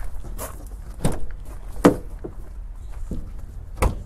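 Rear door of a La Strada Avanti EB camper van being unlatched and swung open: a series of sharp clicks and clunks from the handle and latch, the loudest two about two seconds apart, over a steady low rumble.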